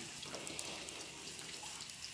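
Firewood burning in a wood-fired stove: a faint, steady hiss with a few light crackles.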